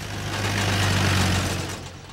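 Cartoon sound effect of a jeep's engine running as it drives off, with a low steady hum under a rushing hiss that swells in the middle and fades near the end.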